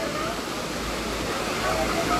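Steady rushing of a wide waterfall pouring into a shallow river pool, with faint voices of people in the water.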